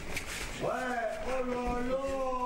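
A person's voice in one long, drawn-out vocal sound, slightly falling in pitch, starting a little over half a second in, just after a short knock.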